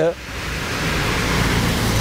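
Road traffic passing close by: a steady rushing of tyres and engine that swells gradually louder over two seconds.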